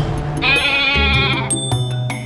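A goat bleating once, a quavering bleat of about a second, over a short music sting that ends in a ringing chime.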